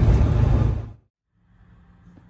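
Road and engine noise inside a moving pickup truck's cab, a steady low rumble that fades out just under a second in. After a brief silence, faint quiet room tone follows.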